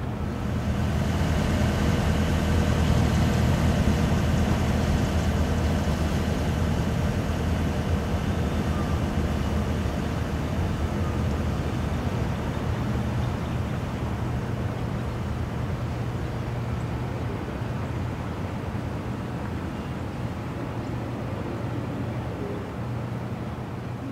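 A steady low droning hum with faint higher tones above it, swelling up over the first few seconds and then slowly easing off.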